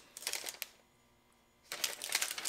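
Plastic whey protein pouch crinkling as it is handled and turned over. The crinkling runs for about the first half-second, stops for about a second of silence, and picks up again near the end.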